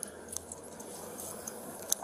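Quiet background with a low steady hum and a couple of faint small clicks, about a third of a second in and again near the end.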